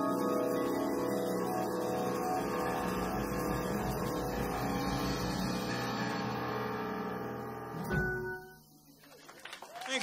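Jazz quartet's final E major chord ringing out on piano and vibraphone, some notes wavering, slowly fading. A last low accent comes about eight seconds in, then the chord is cut off and applause starts just at the end.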